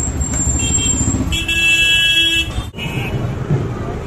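A vehicle horn sounds one steady blast of about a second, over street traffic rumble, with a thin high steady tone in the first second before it.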